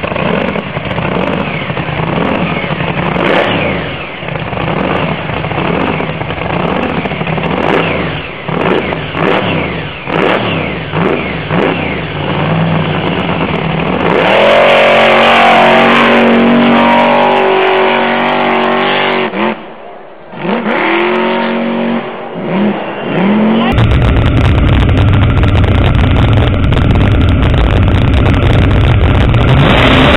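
Hillclimb truck's engine with sharp throttle strokes, then held at full throttle for about five seconds with its pitch climbing as it drives up the sand dune. It drops off briefly about twenty seconds in, revs again and falls away. After a cut, a different engine gives a steady deep rumble heard from onboard a sand rail.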